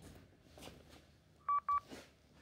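Recorded phone call played back through a smartphone's speaker: faint line hiss, then two quick high-pitched electronic beeps about one and a half seconds in as the recording reaches its end.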